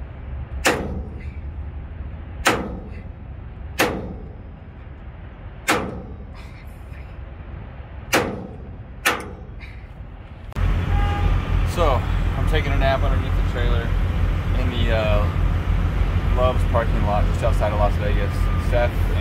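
A sledgehammer striking metal at a trailer wheel hub six times, the blows a second or two apart, in an effort to knock a stuck part of the axle free. Near the middle the sound changes abruptly to a steady low rumble with voices.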